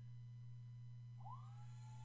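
Parrot Bebop 2 drone powering up: about a second in, a faint whine rises in pitch and then holds steady, the drone's internal fan spinning up, over a low steady hum.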